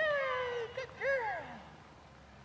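Two drawn-out, high-pitched vocal calls, each falling in pitch: the first at the start, the second about a second in.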